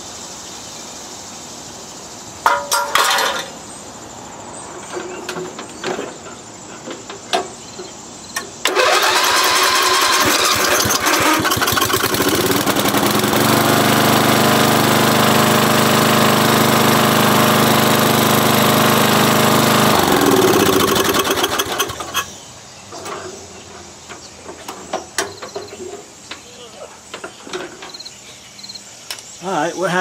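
A Briggs & Stratton 11 HP single-cylinder lawn tractor engine, just repaired by pressing a dropped valve seat back in and peening the aluminum around it, is cranked over about nine seconds in. It catches, runs steadily for several seconds, then is shut off and winds down with falling pitch. A couple of seconds in there is a brief loud clatter.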